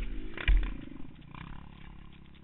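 Single-cylinder Yamaha ATV engine running hard as the quad crests a sandy hill. A heavy low thump comes about half a second in, the loudest moment, and then the engine note settles lower.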